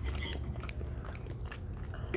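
Close-up eating sounds of children chewing pasta, with many small quick clicks throughout.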